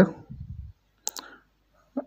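Two quick, sharp clicks from a computer's mouse or keys about a second in, while code is being edited on screen.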